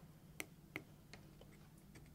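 Small tactile push-button switches on a circuit board being pressed by a finger, giving faint clicks: two clear clicks in the first second, then a few fainter ticks.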